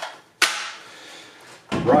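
One sharp plastic click about half a second in, from handling a DeWalt FlexVolt battery with its snap-on dust protector cap, followed by a fading rustle. A duller knock comes near the end.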